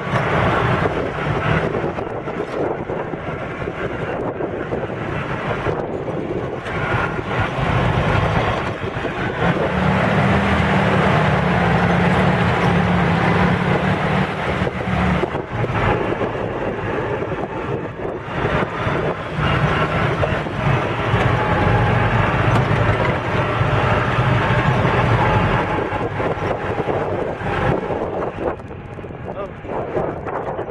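An open-top jeep's engine running as it drives along a rough dirt trail, with wind rumbling on the microphone and frequent knocks from the bumps. The engine note is strongest and steadiest for a few seconds near the middle.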